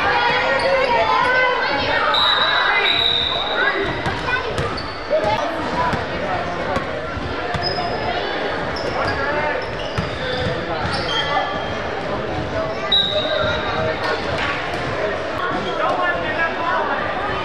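Basketball being dribbled on a hardwood gym floor, with repeated sharp bounces echoing in the hall. Short high squeaks of sneakers on the court come a few seconds in and again near the end, over the voices of players and spectators.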